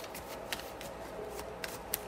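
Tarot cards being handled and shuffled to draw clarifying cards, with several short sharp card clicks, the loudest near the end.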